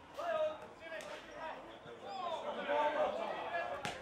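Players and spectators shouting at a junior Australian rules football match, the calls rising about halfway through. A sharp thud of the football being kicked comes just before the end.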